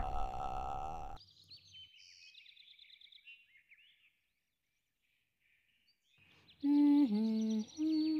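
Background music fades out in the first second, followed by a few faint high chirps and a pause. Near the end, a person hums a short tune of three held notes.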